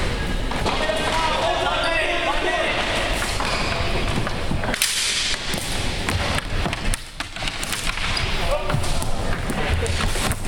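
Floor hockey being played on a hardwood gym floor: plastic hockey sticks clacking and knocking against the ball and floor in quick, irregular hits, with players calling out in the first few seconds.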